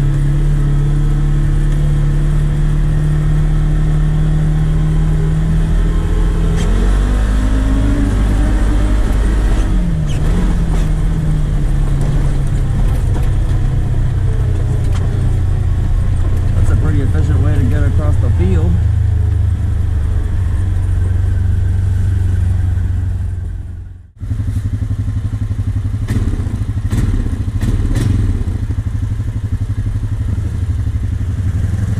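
Honda Rancher 420 ATV's single-cylinder four-stroke engine running hard under load. Its pitch climbs, drops back around 10 seconds in as the dual-clutch transmission shifts, climbs again, then holds steady. The sound cuts out abruptly for a moment just after 24 seconds, then resumes.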